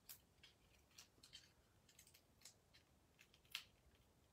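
Faint, scattered taps and rustles of paper being handled and pressed down onto a card, the clearest tick about three and a half seconds in.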